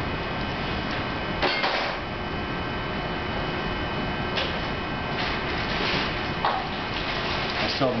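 A few short puffs of breath blown through a copper tube into a ball of pulled sugar, the clearest about a second and a half in, over a steady room hum.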